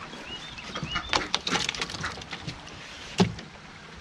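A wire crawfish trap handled and crawfish tipped into a plastic cooler: a run of irregular clicks and knocks, then one sharp knock near the end.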